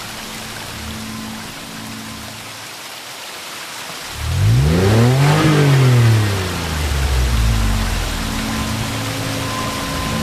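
A steady rain-like rushing hiss, with faint held low tones. About four seconds in, a loud engine-like sound climbs in pitch and then sweeps back down, as if a vehicle is passing.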